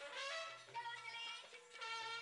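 Indian folk-style song: a sung melody gliding between held notes over instrumental backing with a repeating low bass note.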